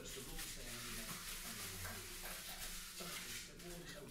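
Faint, steady scraping of a plastic float rubbed over fresh sand and cement render, a screw tip in its corner compressing the surface and scratching a key into it for a skim coat.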